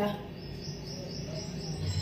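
A cricket chirping in a high, steady, pulsing trill over a faint low hum.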